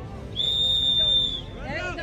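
A referee's whistle blown once, a steady high blast lasting about a second, followed by voices on the field.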